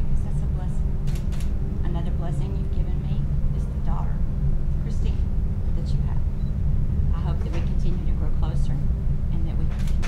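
Quiet, indistinct speech over a steady low rumble, which is the loudest sound throughout.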